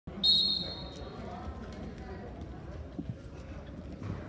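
A short, high, steady whistle blast near the start, then echoing gym background with faint voices and a soft knock on the mat about three seconds in.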